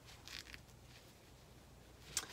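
Near silence with a faint rustle of fabric and zipper tape being handled, a little stronger about half a second in.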